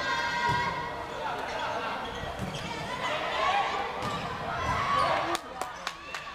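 Volleyball rally on an indoor gym court: players' shoes squeaking on the floor and voices calling out, with a few sharp smacks of the ball near the end.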